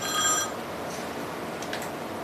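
A single short bell-like chime with several clear high tones, ringing for about half a second at the start, then faint room noise.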